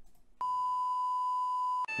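Television test-card tone: one steady, pure beep that starts abruptly about half a second in and cuts off just before the end.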